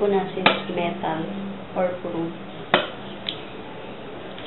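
Quiet, indistinct talking, with a few sharp clicks: one about half a second in, two more near three seconds in. A steady low hum runs underneath.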